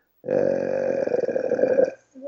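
A man's long, drawn-out hesitation sound, a steady "eeeh" held at one pitch for over a second and a half with a rough, creaky voice, as he searches for the next word mid-sentence.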